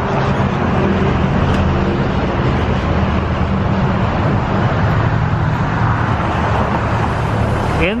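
Road traffic close by: a motor vehicle's engine runs with a steady low hum under a constant loud wash of road noise.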